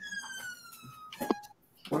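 A high tone with overtones gliding steadily down in pitch for about a second, like a siren's wail, followed by a short blip.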